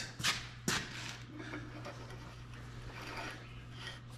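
Two sharp metallic clicks in the first second as a steel pipe tee fitting knocks against the pipe end, then faint scraping as the tee is turned by hand onto the taped threads, over a steady low hum.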